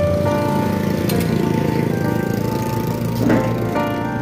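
Background music with long held melody notes over a steady accompaniment.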